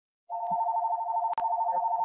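Electronic telephone ringing: a fast warbling two-tone trill lasting about two seconds, with a single click partway through.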